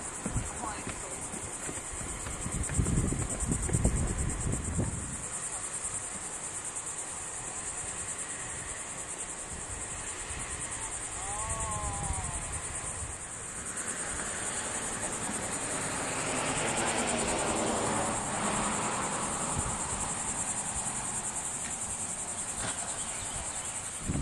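Insects buzzing in a steady, high-pitched, unbroken drone, with wind rumbling on the microphone in the first few seconds.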